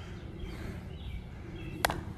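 Quiet outdoor ambience with a few faint bird chirps, then near the end a single sharp crack of a baseball bat hitting the ball.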